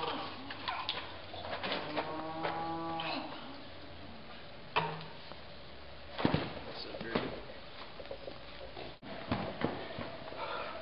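A cow mooing: one long call about two seconds in, with a few sharp knocks later.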